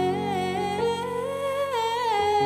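A woman's voice singing a wordless, held melody with vibrato, the pitch climbing slowly and dropping near the end, over held accompaniment chords.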